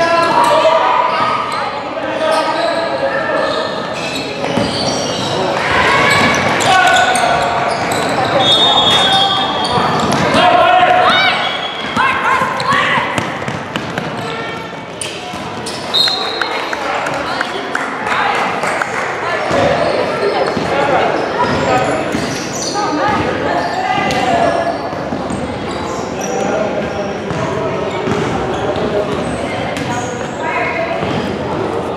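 Youth basketball game on a hardwood gym court: the ball bouncing, players' and spectators' voices calling out throughout, and a couple of short high squeaks, echoing in the large hall.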